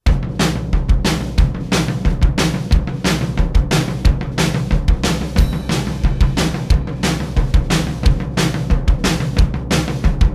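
A song's instrumental opening starting suddenly out of silence: a drum kit playing a fast, steady beat with bass drum, snare and cymbals over bass.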